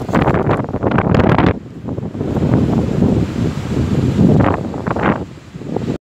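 Wind buffeting the microphone in loud, uneven gusts, easing briefly about two seconds in and surging again before dropping off at the end.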